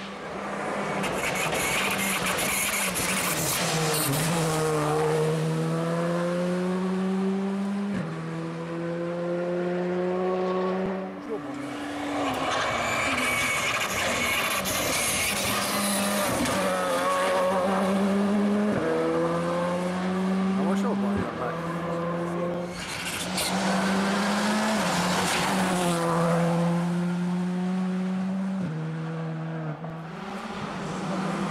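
A Škoda Fabia R5 rally car's turbocharged four-cylinder engine at full throttle. The pitch climbs through each gear and drops at each upshift, several times over. Loud tyre and gravel noise rises as the car passes.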